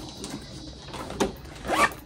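Zipper on a small fabric pouch being pulled, with handling rustle and a sharp click a little over a second in.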